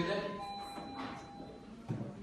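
Indistinct voices in a meeting hall, with faint steady tones held underneath and a single sharp knock near the end.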